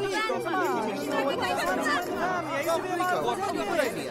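Several voices singing and talking over one another at once, an ensemble of stage performers in the middle of a musical number.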